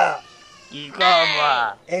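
A cow or calf mooing: a short call just under a second in, then one longer call that falls slightly in pitch.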